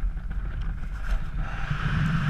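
Steady wind rushing over the microphone during a descent under an open parachute canopy.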